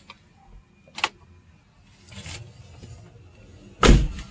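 Clicks from a Chevrolet Tahoe's cab controls and door, one sharp click about a second in, then a single loud thump just before the end as the door is shut.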